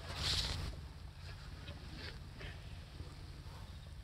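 A horse blowing a short breath out through its nostrils close to the microphone in the first second, then faint light rustling and ticks over a low rumble.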